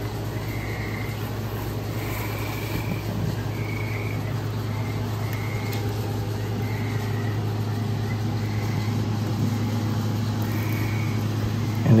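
A steady low hum, with faint short high-pitched chirps about once a second.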